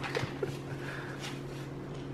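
Faint handling of a cardboard tube and its paper wrapping: light rustles and a couple of small ticks over a steady low electrical hum.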